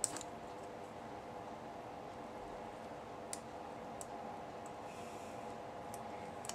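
Faint, scattered small clicks as the metal prongs of a rhinestone brad are bent open against cardstock, a few times over several seconds, over a steady faint hum.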